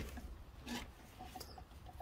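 Faint scuffs and rubbing of shoes walking on a concrete driveway, with one short, slightly stronger scuff a little under a second in.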